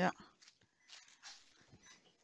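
A man's voice says a short 'yeah', followed by faint, indistinct room sounds.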